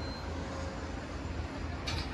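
Steady low outdoor rumble with no distinct events, as from wind on the microphone or distant traffic.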